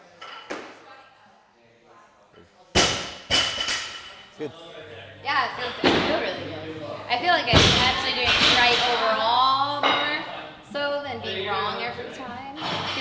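A loaded barbell with bumper plates dropped onto a weightlifting platform after a lift: one heavy thud, then a smaller one as it bounces.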